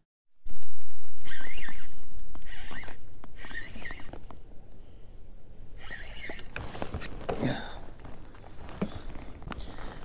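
Low rumble on the microphone while a small bass is reeled in on a spinning rod from a kayak, starting suddenly and loud and fading over a few seconds, with scattered light clicks and splashy noises.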